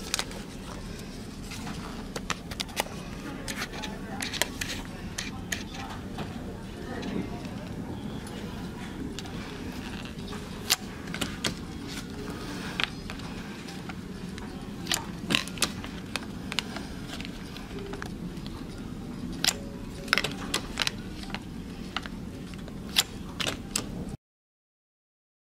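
A plastic keycard tried in a cabin door's electronic lock and the metal lever handle worked, making repeated sharp clicks and rattles over a steady low hum. The lock does not open: it is the wrong cabin door.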